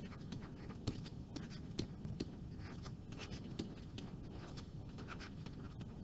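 Stylus writing on a tablet: faint, irregular light taps and short scratches as figures are hand-written.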